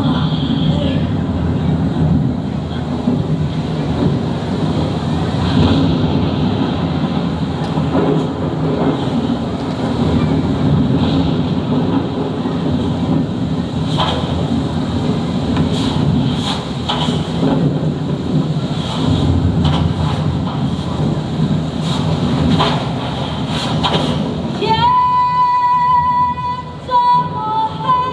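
Loud, continuous low rumble with scattered sharp cracks, a storm-and-flood effect in a stage play. A woman starts singing near the end.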